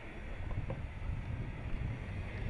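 Low, steady rumble of a Jeep Cherokee driving slowly over slickrock, mixed with wind on the microphone.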